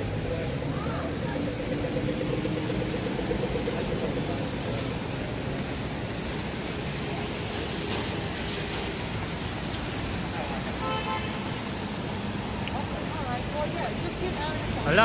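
Audible pedestrian crossing signal sounding its fast, evenly repeating walk cue for the first few seconds, telling pedestrians that it is safe to cross. Under it runs a steady wash of traffic on a wet road.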